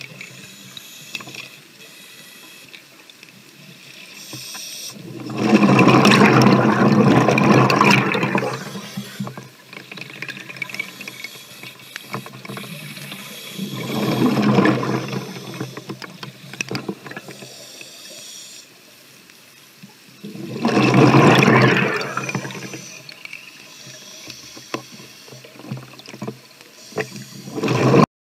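A scuba diver breathing on an open-circuit regulator, heard through an underwater camera's microphone: three loud rushes of exhaled bubbles about seven seconds apart, with a quieter hiss and bubbly crackle between them.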